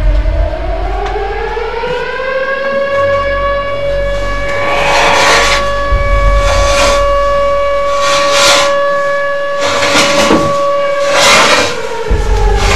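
A siren-like wailing tone rises in pitch, holds one steady note for several seconds, then falls again near the end. Short hissing bursts come at intervals over a low rumble.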